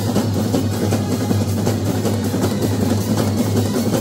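Massed Kerala brass band playing live: many bass drums, snare drums and cymbals beating a steady rhythm under held brass horn notes.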